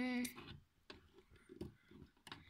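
A short held voice note at the start, then a few light, scattered plastic clicks and taps as a small plastic mini-doll figure is handled and set down on the floor of a toy house.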